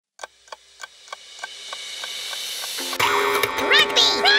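Clock ticking about three times a second under a rising swell. About three seconds in, a musical chord comes in, and near the end a high, swooping cartoon bird voice calls out of the cuckoo clock.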